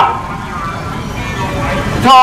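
Steady road traffic noise from a busy city street, a low even hum of passing vehicles.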